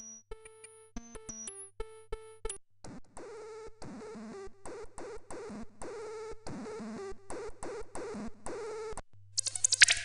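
Electronic sound effects from the Radio Active Atomic Effects Synth, a freeware monophonic subtractive software synth: first sparse beeps that step in pitch, then from about three seconds a regular pattern of short pulses with sweeping tones, about three a second. Near the end a brighter, harsher glitchy sequence starts.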